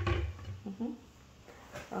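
A plastic bottle set down on a granite countertop: one dull thump right at the start.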